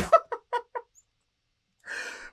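A man laughing in four short, breathy bursts within the first second, just as loud heavy metal music cuts off.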